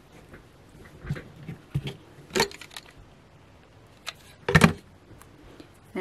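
Scissors snipping thread and small craft items handled on a table: a few short clicks and taps, the loudest a double snip about four and a half seconds in.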